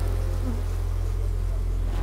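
Steady buzzing hum of a honeybee colony, many bees at once on the frame tops of an open hive.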